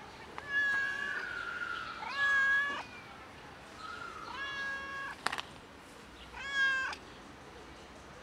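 A cat meowing repeatedly: four meows, the loudest about two and a half and six and a half seconds in. A short sharp click comes just after five seconds.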